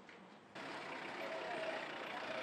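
Steady street traffic noise with a vehicle engine running, starting abruptly about half a second in after a quieter stretch.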